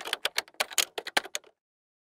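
Typewriter keystroke sound effect: a quick, uneven run of key clacks as text is typed out. The clacks stop about one and a half seconds in.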